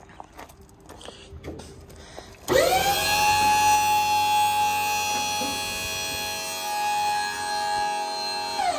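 The dump trailer's electric hydraulic pump switches on about two and a half seconds in, spinning up with a quickly rising whine and then running steadily as it begins to raise the bed on the telescopic hoist.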